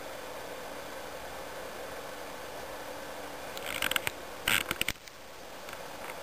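Steady low background hiss and hum. About four seconds in comes a short cluster of clicks and scraping rustles, likely the camera being handled or nudged.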